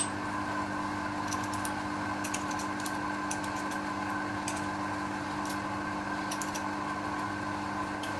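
A steady mechanical hum with a light hiss. Over it come a few faint, light clicks of small metal parts as a threading insert is fitted and screwed into a lathe's quick-change tool holder.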